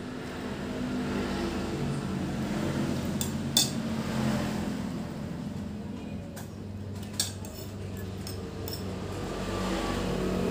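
Metal spoon and fork clinking and scraping against a ceramic plate during eating, with a few sharp clinks, the sharpest about three and a half seconds in. A low rumble runs underneath.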